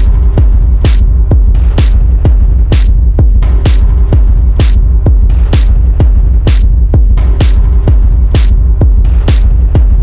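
Dark minimal techno track with a steady beat of about two hits a second over a continuous deep bass. A brighter hit lands on every other beat, and a short held synth tone returns every few seconds.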